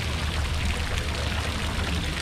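Fountain water falling and splashing steadily into its pool, over a low rumble.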